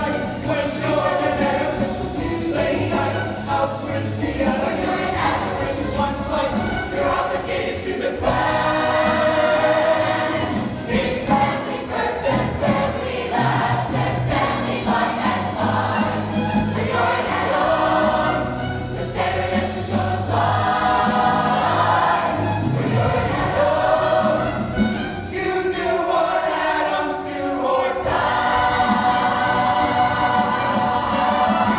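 A large mixed-voice ensemble singing together in chorus over instrumental accompaniment, a stage musical number.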